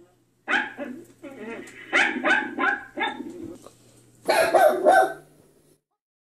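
A dog barking in a series of short runs of barks, with a louder burst of barks near the end that stops abruptly.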